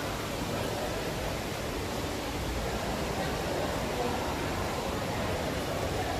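Steady rushing noise of falling water from an indoor waterfall, with faint voices of visitors in the background.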